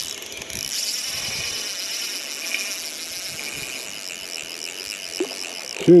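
Spinning reel giving a steady, high-pitched whir with a fine fast clicking while a hooked fish is played on light line.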